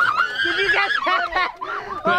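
Several people shrieking and laughing in excitement, high voices sliding up and down without clear words, with a brief lull near the end.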